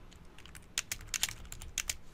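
Typing on a computer keyboard: a run of keystroke clicks, a few at first, then a quick flurry through the second half as a short phrase is typed.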